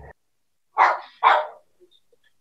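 A dog barking twice, two short barks about half a second apart, heard over the video call's audio.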